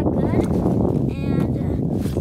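Brief indistinct speech over a steady, rough rumble of wind buffeting the microphone on open ice.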